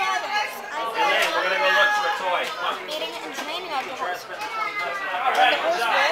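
Several people talking at once: indistinct overlapping chatter, with no single voice clear.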